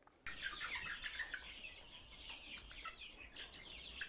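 A flock of chickens clucking and chirping, many short calls overlapping, starting about a quarter second in.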